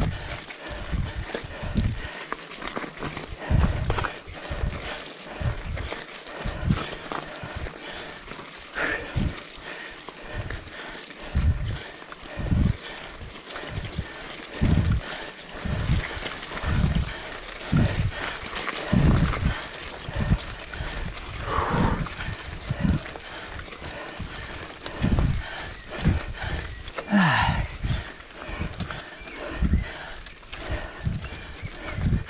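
A mountain biker's hard, rhythmic breathing close to the microphone while pedalling up a steep, rocky climb, about one heavy breath a second. A short groaning vocal sound falls in pitch near the end.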